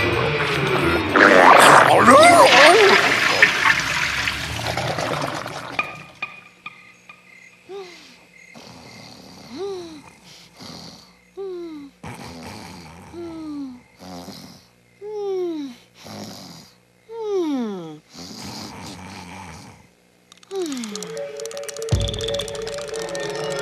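Loud cartoon retching into a toilet bowl, mixed with music, for the first few seconds. Then a sleeper snoring in a steady rhythm, about one breath every two seconds: each is a rasping snort followed by a falling, whistle-like tone.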